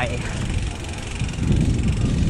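Wind buffeting the microphone of a mountain bike's handlebar camera as the bike rolls along a paved road: a low, irregular rumble with a faint hiss above it.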